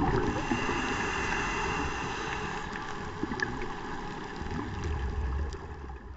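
Underwater sound picked up by the camera: a muffled, even rushing of water with faint scattered clicks, fading down near the end.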